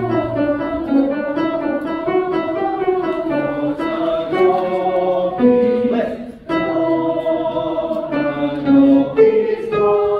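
Women's voices of a choir's soprano-alto section singing a passage in sustained, moving notes, with a short break for breath a little past six seconds in.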